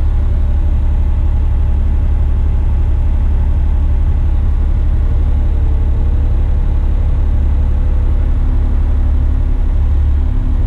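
Truck's diesel engine and drivetrain heard from inside the cab while driving slowly over a dirt site: a steady deep rumble. A faint higher whine comes in about halfway through and wavers in pitch.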